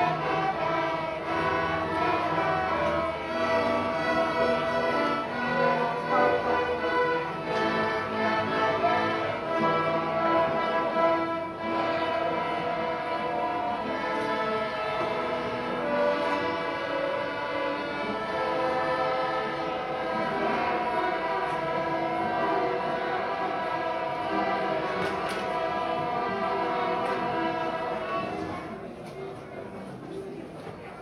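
A student string orchestra of young violinists plays an arrangement of Christmas carols in sustained, bowed chords and melody. The music stops near the end.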